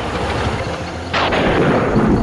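Horror-trailer boom sound effect: a low rumble, then a sudden loud crack about a second in that dies away slowly.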